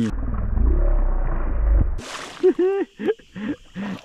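A deep, muffled rumble for about two seconds with the higher sounds cut away, then a brief splash as a hooked fish thrashes at the surface, with a man's short excited calls over it.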